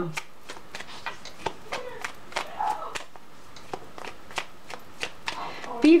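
A deck of tarot cards being shuffled by hand: a run of light, irregular card clicks, about three a second.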